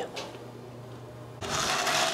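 Low room tone with a faint steady hum, then, about one and a half seconds in, a sudden change to a rustling, light rattle as a cup of dry microwavable macaroni is handled and turned in the hand.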